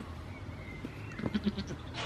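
A goat bleats once, a short broken bleat of about three quick pulses, a little over a second in.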